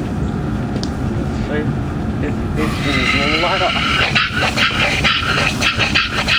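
Steam hissing as it is let into a small single-cylinder steam engine fed from a homemade vertical boiler, starting suddenly about halfway through and then breaking into quick, even chuffs as the engine begins to turn over. A dog gives a wavering whine just as the steam comes on.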